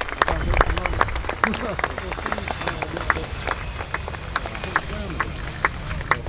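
Spectators clapping close to the microphone, sharp irregular hand claps, with people talking in the crowd.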